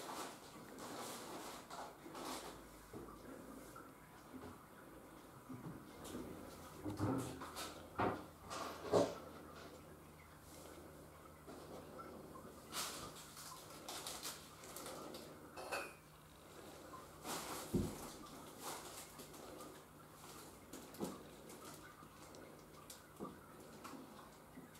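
Scattered light knocks and clatter in a quiet room, the loudest two sharp knocks about eight and nine seconds in, over a faint low steady hum.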